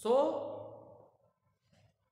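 Speech: a man says one long, drawn-out, sigh-like "so", hissy at the start and fading away over about a second.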